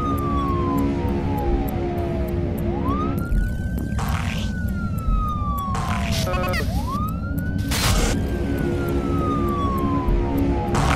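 A wailing siren sound mixed into the programme's theme music: the pitch sweeps up quickly and then falls slowly over a couple of seconds, about three times, over a steady music bed with a fast ticking beat and several short swooshes.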